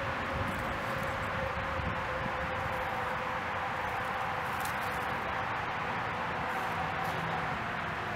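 Minelab Go-Find 60 metal detector giving a faint steady tone as its coil is swept over a bottle cap, the tone sitting higher in the second half, over a steady hiss.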